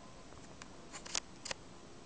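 A few small, sharp clicks: two faint ones about half a second in, then a louder cluster about a second in and a last click about a second and a half in.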